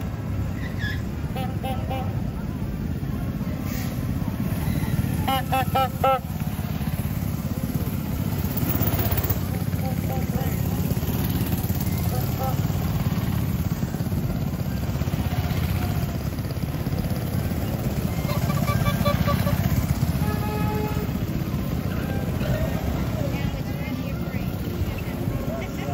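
Small engines of miniature parade cars running at low speed as they pass, a steady low rumble, with a few short high toots from their horns about five seconds in and again near twenty seconds.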